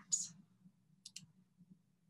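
Two faint, sharp computer mouse clicks about a second in, over a low steady hum.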